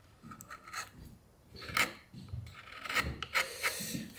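Carving chisel paring and scraping the edge of a small scroll-sawn wooden piece in several short, irregular strokes, cleaning up untidy grain.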